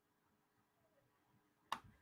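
Near silence: room tone, broken by a single sharp click near the end.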